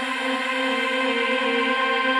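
Electronic music: a synthesizer pad chord held steadily, several tones sounding together, with no drums or bass beneath.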